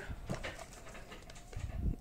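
Faint rustling and crinkling of plastic-foil cosmetic sample sachets being handled, with a soft low bump near the end.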